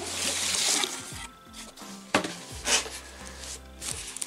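White cardboard mailer box being opened by hand: the flap and lid rustle and scrape as they are pulled free, with a sharp tap about two seconds in and a short rustle after it.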